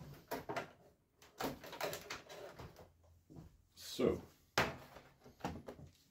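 ThinkPad X200 UltraBase docking station being lifted, carried and set down on a wooden tabletop: a scattered series of sharp clicks, knocks and handling clatter.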